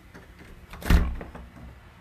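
A door being opened by hand: faint clicks from the handle, then one loud thump about a second in.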